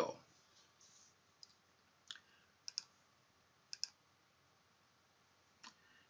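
Faint computer mouse clicks, some in quick pairs, over near silence.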